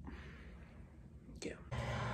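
Quiet room tone with one soft, whispered "yeah" about a second and a half in. Near the end a steady low hum comes in.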